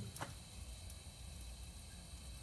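Quiet background hum with one faint click just after the start.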